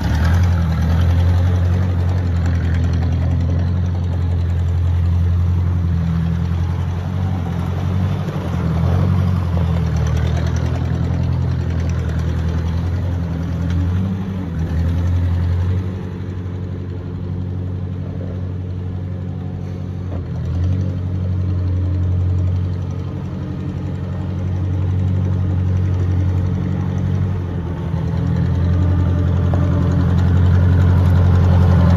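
1955 Ford 600 tractor's 33 hp four-cylinder gasoline engine running steadily at low speed as the tractor drives. It grows somewhat quieter in the middle as the tractor moves off, and louder near the end as it comes close again.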